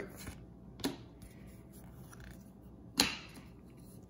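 Hockey cards being slid off a stack held in the hand: two short swishes of card on card, a faint one about a second in and a louder one about three seconds in.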